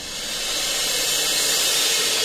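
A rising whoosh: a swelling hiss of noise that grows steadily louder, an edited transition sound effect.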